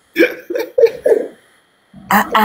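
A woman's voice making four quick, short sounds in about a second, like a stifled laugh or catches of breath rather than words.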